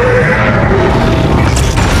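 Blockbuster film battle sound mix of a giant monster fighting a robot: deep booms and crashing impacts over a music score, with a sharp crash about a second and a half in.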